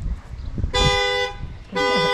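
Vehicle horn honking twice, two steady blasts of about half a second each, a second apart.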